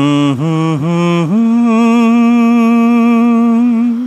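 A solo male voice, unaccompanied, humming the wordless opening of a Bengali song: two short wavering phrases, then a step up to one long held note with vibrato.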